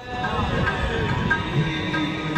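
Sikh kirtan: a devotional hymn sung with sustained harmonium-like accompaniment. It comes back in after a brief lull right at the start, then goes on steadily with held notes.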